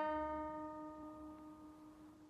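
Bağlama (saz) strings ringing on after the final strums of the piece, a single held chord dying away over about two seconds.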